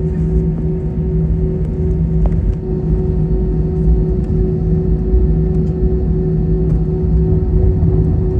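Airbus A320 cabin noise while taxiing: the engines at idle give a steady low rumble with a constant hum through it.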